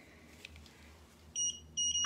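Handheld microchip scanner giving two short, high-pitched beeps in the second half as it reads a frog's implanted microchip.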